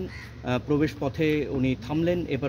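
A man's voice talking, in short phrases with brief pauses.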